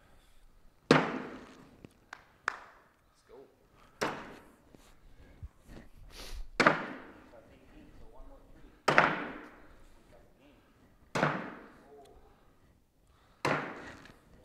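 Cornhole bean bags landing one after another on a wooden cornhole board: about six sharp thuds roughly two seconds apart, each echoing in a large hall.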